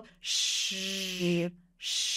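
A woman's voice holds a hissing 'sh' and, partway through, switches to a buzzing voiced 'zh' in the same breath, turning the vocal folds on mid-sound. After a brief pause, another hiss begins near the end.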